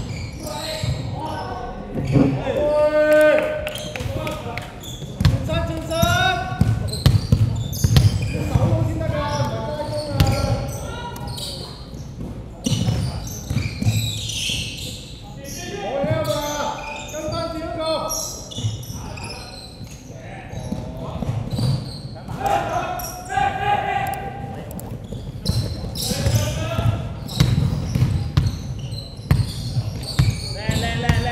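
A basketball bouncing on a hardwood gym floor during live play, with repeated sharp thuds, over players' shouts and calls in a large indoor sports hall.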